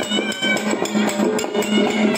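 A festival wind band: a reed pipe plays a wavering, gliding melody over drums beating steadily, about four strokes a second.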